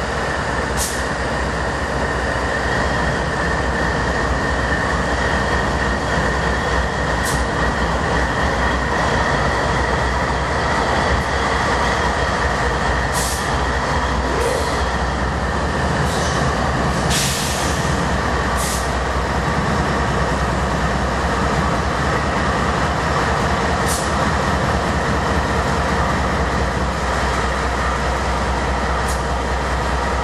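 Two GE AC44CW diesel-electric locomotives with V16 engines idling loudly: a steady diesel rumble with a constant high whine over it. Several short sharp hisses break in, the longest a little past halfway.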